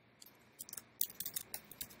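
Faint computer keyboard keystrokes: a handful of light, separate key clicks, starting about half a second in.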